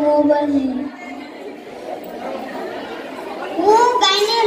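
Speech and chatter: a held voice in the first second, then children murmuring in a large room, and another voice starting with a rising pitch near the end.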